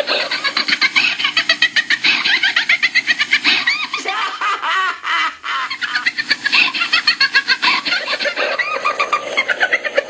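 Baby laughter from Remco's Baby Laugh-A-Lot doll, in rapid high-pitched peals of several a second, with a short break about five seconds in.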